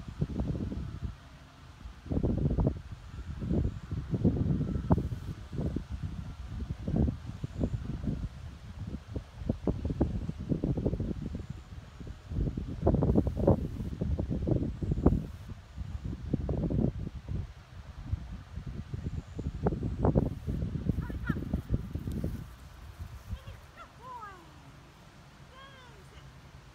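Wind buffeting the microphone in irregular low gusts, dying down about 22 seconds in. A few short falling chirps are heard near the end.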